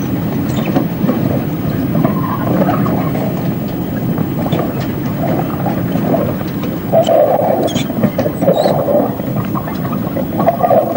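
Train of narrow-gauge open rail wagons moving past with a continuous clatter and scattered metallic clanks, dragging rails pulled up from the sleepers. The clatter is thickest about seven to nine seconds in.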